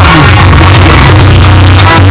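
Loud music with a heavy, steady bass line.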